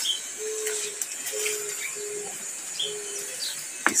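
A bird calling in the background: four short, level low notes of even pitch spread over about three seconds, with a few faint high chirps between them.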